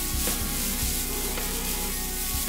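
A cartoon sound effect of a snake slithering through grass: a steady rustling hiss, with soft background music underneath.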